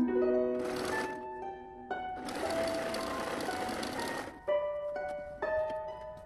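Domestic electric sewing machine stitching in two runs: a short one about half a second in, then a longer one of about two seconds in the middle. Plucked, harp-like background music plays throughout.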